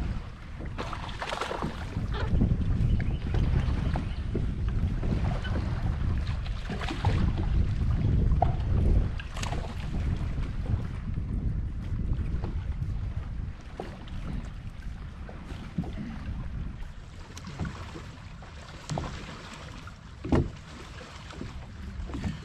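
Wind buffeting the microphone on an open boat deck, a low rumble that is heaviest in the first half and eases later, with a few short knocks and clicks scattered through.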